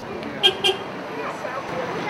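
A bus horn gives two quick toots about half a second in, over steady street traffic noise.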